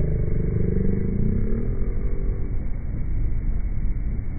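Low, steady rumble of a small fishing boat's engine, played back slowed down so it sounds deep and dragging. A faint falling tone fades out in the first two seconds or so.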